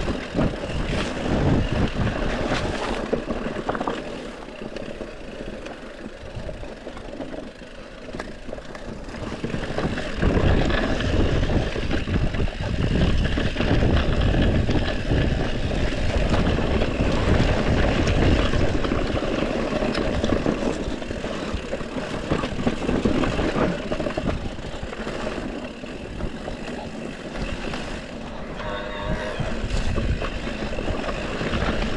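Mountain bike riding down a rough dirt trail: wind buffeting the camera's microphone, mixed with tyre noise and rattling from the bike, quieter for a few seconds early on. A brief squeal comes near the end.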